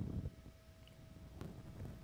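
A faint sip and swallow of beer from a glass, with one small sharp click a little past halfway. A steady faint hum runs underneath.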